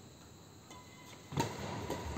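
Badminton racket striking a shuttlecock with one sharp hit about one and a half seconds in, echoing in a large sports hall, with thin squeaks of shoes on the wooden court floor.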